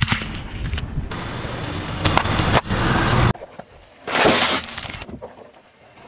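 Car tyre rolling over and crushing small objects, one after another in short clips cut together: cracking, breaking and crunching, with the loudest break about four seconds in.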